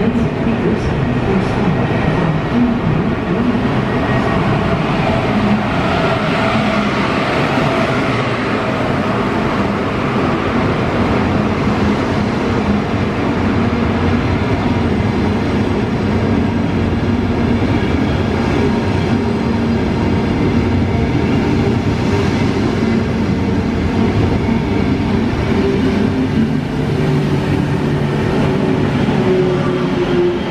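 An SNCB IC train hauled by a Series 18 electric locomotive pulls in along the platform, its coaches rolling past close by. There is a loud, steady rumble of wheels on rail with several held humming tones.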